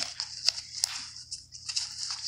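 Handling noise from a zippered faux-leather card case and the crinkly white wrapping inside it being fumbled one-handed: soft rustling with a few light clicks.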